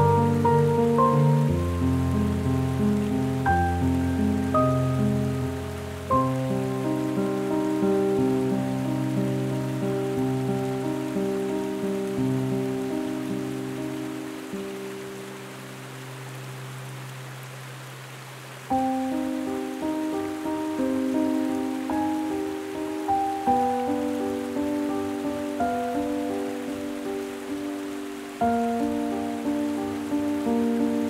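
Solo piano played slowly and solemnly with heavy reverb, its notes and chords ringing and fading into one another. Around the middle the playing thins to one low chord that dies away, then a loud new chord strikes and the melody picks up again.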